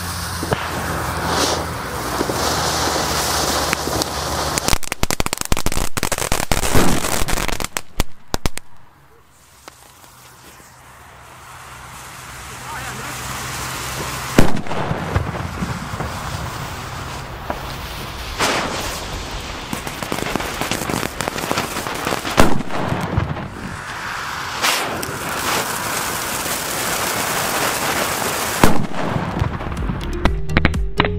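Funke Mixed Flowers P1 firecrackers with fountain pre-burners going off one after another. Each spark fountain hisses and crackles for several seconds and then ends in a sharp, loud bang. There is a burst of crackling and bangs several seconds in, then single bangs about halfway through, later on, and near the end.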